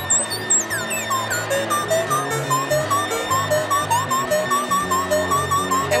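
littleBits Synth Kit modular synthesizer playing a step-sequencer loop through its filter and small speaker module: short pitched notes repeating about four times a second, with stepping low notes and quick chirping pitch sweeps on top.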